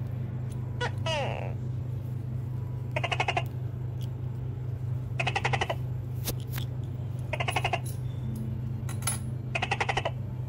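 An animal calling with short rattling trains of rapid clicks, four times, about two seconds apart, over a steady low hum.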